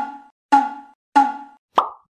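Four short cartoon-style pop sound effects, evenly spaced a little over half a second apart. Each is a quick pitched plop that dies away fast, and the fourth is shorter and sweeps upward.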